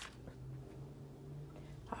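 Quiet indoor room tone with a faint steady low hum and a single sharp click at the start.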